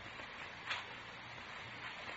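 Faint, steady background hiss of an old radio transcription recording, with one soft short tick about two-thirds of a second in.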